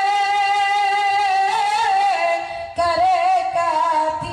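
A woman's solo voice singing into a microphone, drawing out long wavering notes with ornamented turns, with a short break for breath a little before three seconds in.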